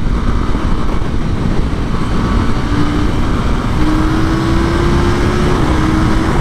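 KTM 890 Duke R's parallel-twin engine accelerating hard at motorway speed, its tone rising slowly, under loud, steady wind noise on the microphone.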